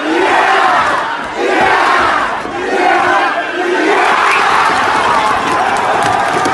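Crowd of onlookers shouting and cheering, many voices swelling together in several loud waves.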